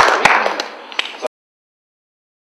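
Audience applause dying away to a few scattered last claps, then cutting off suddenly a little over a second in.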